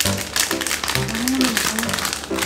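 Background music over the crackle of plastic snack bags being handled and opened, with a brief hum-like voice sound a little past the middle.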